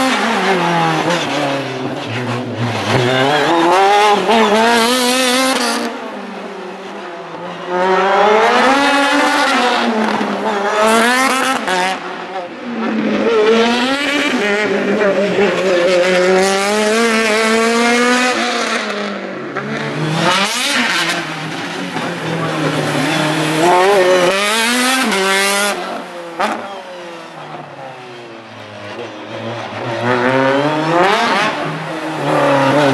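Single-seater formula race car's engine revving hard and dropping back again and again, its pitch climbing and falling every couple of seconds as it accelerates and brakes between slalom cones. It dips quieter twice, as the car moves away.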